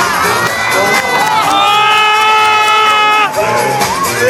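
Audience cheering and shouting over dance-battle music, with a long held shouted note in the middle.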